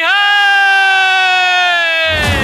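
A man's voice holding one long, high sung note, which slides down near the end.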